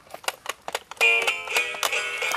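Dora Tunes Guitar toy, a children's electronic guitar, being played by hand. Its plastic strings and buttons click rapidly at first. About a second in, it starts playing a bright electronic tune of short stepped notes through its small speaker.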